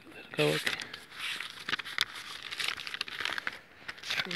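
Close rustling and crackling of dry leaves and twigs, with many small snaps, as the camera is moved through a brush blind, after a brief spoken syllable.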